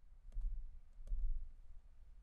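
Faint clicks of a computer mouse, about three of them in the first second, over a few dull low bumps.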